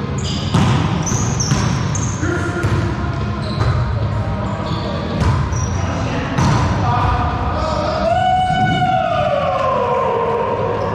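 Wallyball rally in a walled racquetball court: the ball slapped by hands again and again, echoing off the walls, with sneakers squeaking in short bursts on the hardwood floor. Near the end comes a long cry that falls in pitch.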